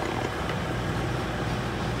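Over-the-range microwave oven running, a steady hum with a low drone.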